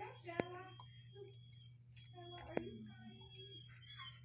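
Faint distant voices over a steady low hum and a faint high-pitched tone. Two sharp clicks come about two seconds apart and are the loudest sounds.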